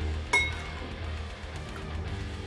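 A metal spoon clinks once against a dish with a short ringing tone, over quiet background music.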